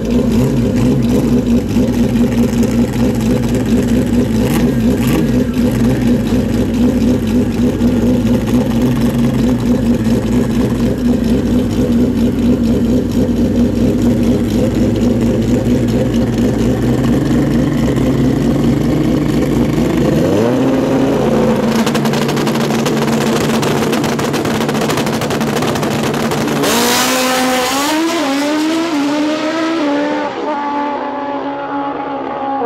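Pro Street drag motorcycle engines idling steadily, revving up about two-thirds of the way in, then launching hard near the end, the engine note climbing through the gears in quick upshifts as the bikes run down the strip.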